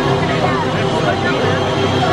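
Loud chatter of many people talking at once in a large hall, with steady low tones held underneath.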